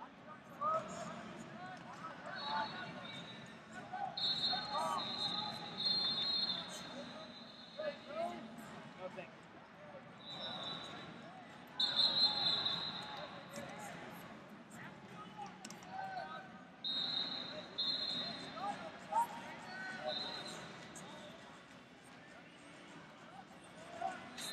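Busy wrestling-tournament hall: scattered shouting voices from coaches and spectators, several high steady tones of about a second each, and short thumps.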